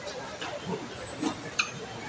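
Background hubbub of a large indoor mall hall, with faint indistinct voices and a few short, sharp clicks.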